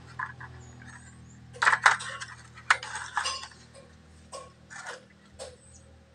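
Hollow PVC door sections knocking and clattering against each other as they are handled: light, sharp knocks in small clusters, loudest about two seconds in.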